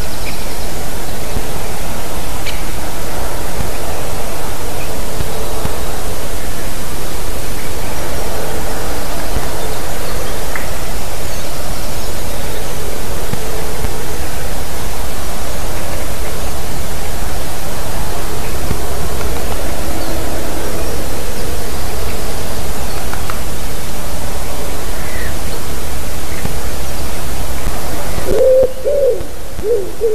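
A loud, steady hiss with a few faint bird chirps in it. Near the end the hiss drops suddenly and a common wood pigeon starts cooing.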